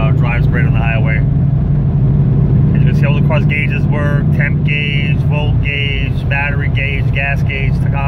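Cabin sound of a 1997 Pontiac Trans Am WS6's V8 with a Borla exhaust cruising at highway speed near 2,000 rpm: a steady low drone with road noise. A man talks over it.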